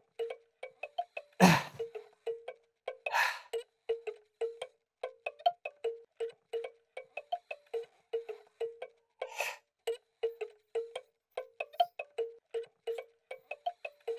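Music-box tinkling: a steady string of short plucked notes, mostly on one pitch, about three a second, playing as a hand crank is turned. A louder noisy burst comes about a second and a half in, with softer ones a little later.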